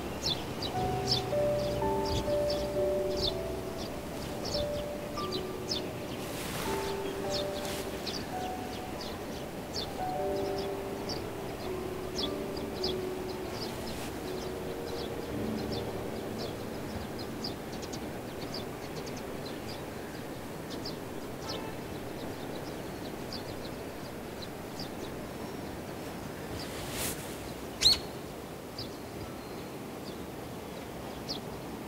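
Soft background music, a simple melody of held notes that is clearest in the first half, over outdoor ambience with many short high bird chirps throughout. A single sharp click near the end.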